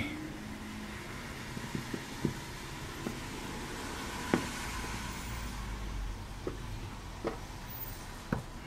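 A few faint small clicks and taps of a dowel and pliers working a photo-etched brass part on a silicone mat, the sharpest about four seconds in, over a steady background hiss. A low rumble of passing traffic swells in the second half and fades.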